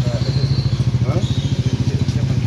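A nearby engine idling, with a loud, steady low hum beating in a rapid, even pulse.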